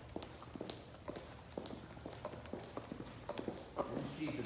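Footsteps of a couple of people walking on a hard, smooth floor: sharp, irregular clicks, several a second, from hard-soled shoes.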